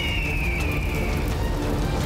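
Dramatic background score with a heavy low rumble, over which a bird of prey's screech sound effect gives one long high cry that slides down in pitch and fades out a little over a second in.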